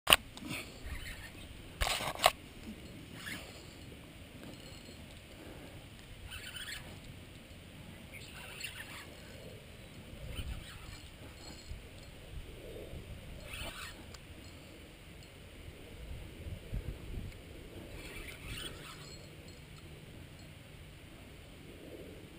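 Close knocks and bumps of an action camera being handled on its mount, loudest right at the start and again about two seconds in. After that come faint, scattered scratchy rustles and ticks every few seconds.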